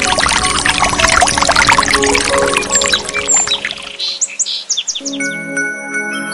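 Pouring, splashing water for the first three seconds or so, then a couple of high bird chirps and a quick run of about seven falling bird chirps. Gentle music with steady tones comes back in about five seconds in.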